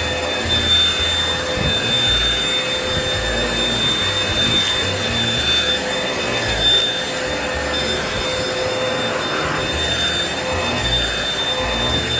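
Handheld vacuum running steadily with a high whine over its hiss, the nozzle pushed back and forth across fabric couch cushions so that the hiss swells and fades every couple of seconds.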